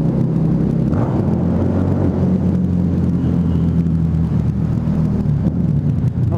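Harley-Davidson V-Rod Muscle's liquid-cooled V-twin with Vance & Hines Competition Series slip-on exhausts, running at a steady cruise under way in a road tunnel, heard from the rider's helmet.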